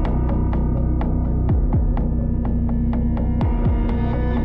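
Intro soundtrack for a film-leader countdown: sharp ticks about four times a second, like a film projector or clock, over a steady low hum. A pair of falling bass thumps, like a heartbeat, comes about every two seconds.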